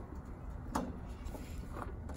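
A spring-steel clip pushed down onto the metal foot ring of a propane tank, with one sharp click a little under a second in and a fainter one near the end, over a low steady background rumble.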